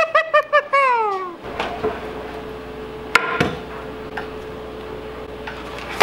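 A man laughing in quick pulses that trail off in a falling whine during the first second and a half. Then comes a faint steady hum, with one sharp clank about three seconds in from a stunt scooter striking the tile floor.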